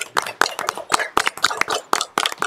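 A small group of people applauding, the separate hand claps distinct and irregular.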